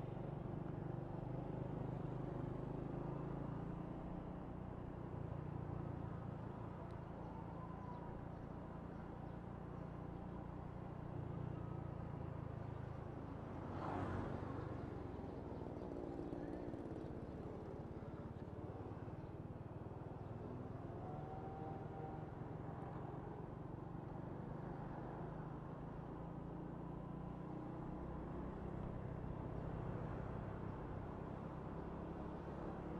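Honda Wave 125 motorcycle's single-cylinder four-stroke engine running steadily while riding through town traffic. There is a brief louder swell about halfway through.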